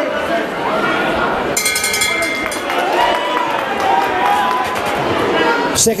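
A boxing ring bell rings briefly about a second and a half in, signalling the end of the round, over the steady chatter and shouting of the crowd in the hall.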